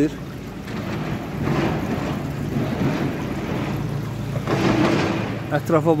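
Water from a pool's spout jets splashing steadily into a swimming pool, swelling louder twice.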